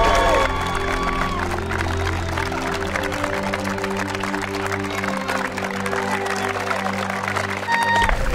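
Background music with slow, held chords, over crowd applause.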